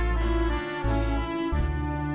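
Orchestra playing an instrumental passage, with clarinets, trumpets and accordion holding sustained chords over a bass line that moves from note to note.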